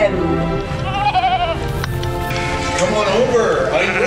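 Sheep bleating over background music: a wavering bleat about a second in and more bleats near the end.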